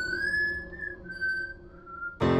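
A whistled melody of a few long, clear high notes, each a little lower than the last.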